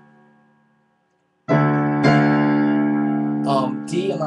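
Digital piano: after a fading note and a moment of silence, a chord is struck suddenly about one and a half seconds in, another strike follows about half a second later, and the chord is held, ringing and slowly dying away.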